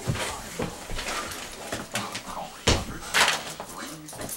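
Bodies scuffling and thumping on the floor during a home wrestling bout, with a sharp thump about two and a half seconds in.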